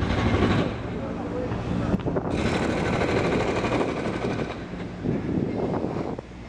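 Wind and road noise on the microphone of a camera carried on a moving bicycle in city traffic, with a sharp click about two seconds in.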